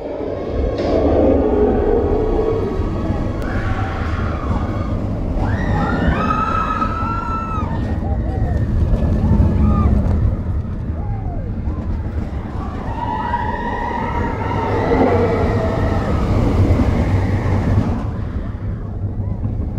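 Expedition Everest roller coaster train running along its track with a steady low rumble. Riders cry out over it in long, wavering shrieks, once about six seconds in and again around thirteen to sixteen seconds in.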